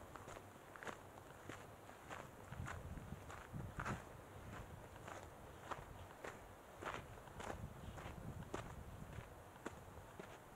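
Footsteps of a hiker walking at a steady pace on a dirt forest trail, crunching about two steps a second.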